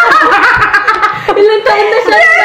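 Several women laughing hard together, in a run of high, broken voices.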